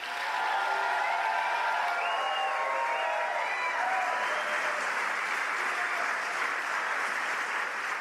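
Audience applauding steadily after a speaker is introduced.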